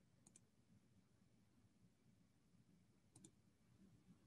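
Near silence, with two faint double clicks, one just after the start and one about three seconds in.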